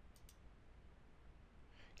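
Near silence with two faint, quick clicks close together shortly after the start: a computer mouse button clicked to open a record.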